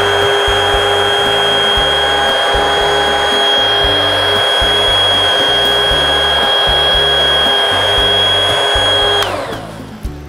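Large commercial stick blender pureeing a tub of tomato gazpacho base as olive oil is blended in: a loud, steady motor whine that winds down and stops about nine seconds in.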